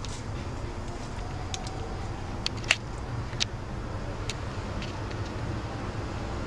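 Steady low rumble of distant road traffic, with several short sharp ticks scattered through it, the loudest a little before halfway.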